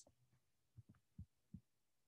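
Near silence broken by three faint, short, soft clicks about a second in, from a computer mouse being clicked to move back through presentation slides.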